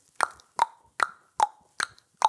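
Five hollow clip-clop clicks, evenly spaced at about two and a half a second, each with a short ringing note: hoof clopping for a unicorn.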